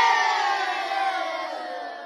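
Crowd cheer sound effect closing a radio station jingle, held and then fading out steadily over about two seconds.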